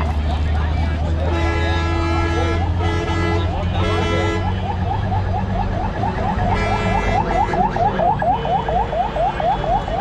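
Busy road traffic: a vehicle engine idling, with several long held horn blasts. From about five seconds in, a fast repeating rising electronic warble sounds, about three or four sweeps a second.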